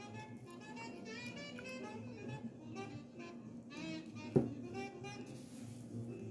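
Faint music playing quietly in the background, with one short sharp tap about four seconds in.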